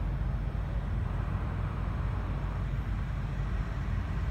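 Steady low rumble of outdoor background noise picked up by a phone microphone.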